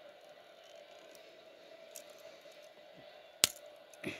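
Small plastic Lego pieces being handled and pressed together: a few faint clicks, then one sharp snap about three and a half seconds in as a piece clicks into place, over a faint steady hum.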